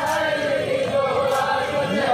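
Male voices singing a marsiya, a Muslim lament for Husain, as a chorus. The sung line is held and continuous, bending up and down in pitch.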